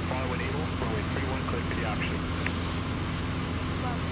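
Super Decathlon's four-cylinder Lycoming engine and propeller droning steadily in fast cruise flight, heard inside the cockpit, with faint voices under it.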